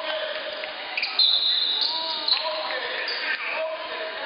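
Basketball bouncing on a hardwood gym floor amid shouting voices of players and spectators, echoing in the large hall. A brief high-pitched steady tone sounds about a second in.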